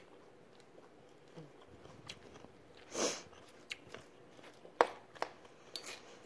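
A person chewing food close to the microphone, with a few sharp crunchy clicks in the second half and a short, louder rush of noise about three seconds in.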